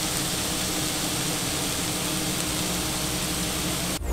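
Burger patties sizzling on a flat-top griddle: a steady, even hiss with a faint low hum beneath it, cut off suddenly at the end.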